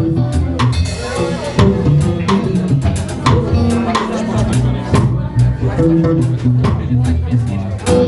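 Live rock trio playing an instrumental passage: electric guitar and bass over a drum kit keeping a steady beat.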